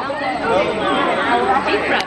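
Several people talking at once: overlapping chatter of a small crowd, no single voice standing out.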